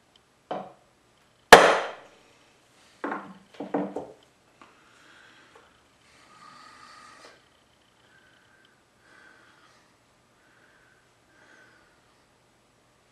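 A hammer blow on a center punch enlarging a prick-punch mark in a metal block before drilling: a light tap, then one sharp, loud strike about a second and a half in. Two duller knocks follow, then faint handling rustle.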